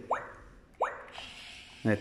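Clementoni Doc toy coding robot giving two short rising bloop tones about a second apart as its head keys are pressed, then a faint whirr near the end as its small drive motors start it moving.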